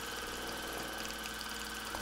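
Sewing machine running steadily at speed while free-motion stitching through layered fabric, an even mechanical hum with no pauses.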